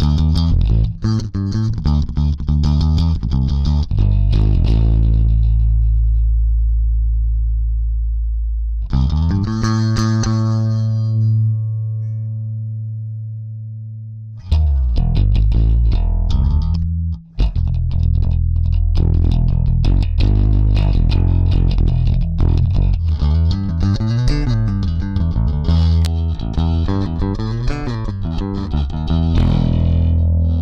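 Music Man StingRay four-string electric bass, finger-played through an engaged Starlifter bass preamp/DI with a little drive. A quick run of notes gives way to two long low notes left ringing and dying away. Near the middle a busy riff starts again, with a brief break shortly after.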